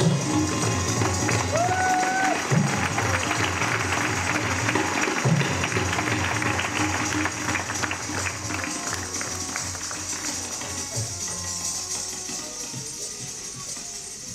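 Live Hindustani accompaniment for Kathak dance: low tabla strokes and a short gliding melody note near the start, over a dense bright patter. The sound dies away over the last few seconds.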